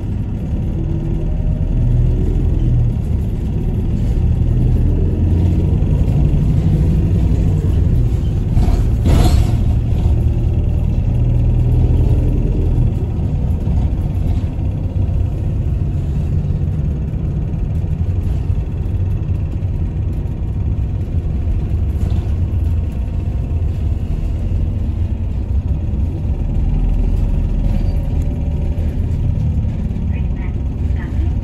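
City circulation bus driving, heard from inside the passenger cabin: a steady low engine and road rumble, with one short louder noise about nine seconds in.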